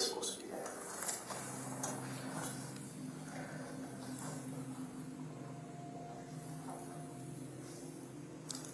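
A steady low hum in a small room, with a few clicks and rustles of movement in the first two seconds.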